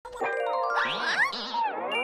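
Cartoon intro jingle: bright chiming notes mixed with tones that swoop up and down in pitch.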